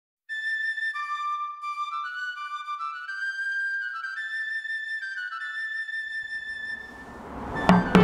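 Background music: a solo woodwind melody that begins after a moment of silence and climbs in short stepwise notes. Near the end it fades out as background noise rises, and a sharp knock sounds: a fist rapping on a glazed door.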